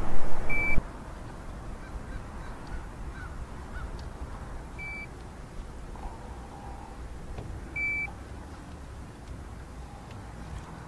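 Three short, high electronic beeps, a few seconds apart, the last a little longer. Under them runs a steady low rumble, after a burst of wind and handling noise that cuts off abruptly under a second in.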